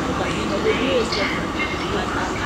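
CrossCountry High Speed Train's Class 43 diesel power car running as the train rolls slowly up to the platform, a steady low rumble.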